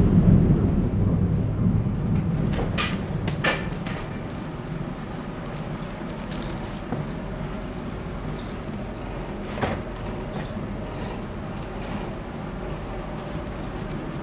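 Windmill millstones grinding wheat: a steady low rumble, louder for the first few seconds and then easing, with a few sharp wooden knocks from the mill's machinery.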